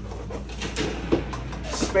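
Bathroom window roller shade being pulled up by hand: rustling and scraping of the shade fabric and roller, with a brief brighter hiss near the end.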